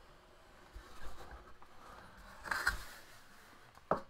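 Cardboard box lid being lifted off and handled, with soft scraping. There is a brief rustle about two and a half seconds in and a single sharp tap near the end.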